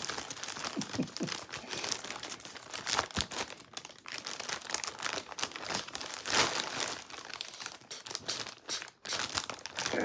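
Packaging crinkling and rustling with irregular crackles as a package is handled and opened by hand.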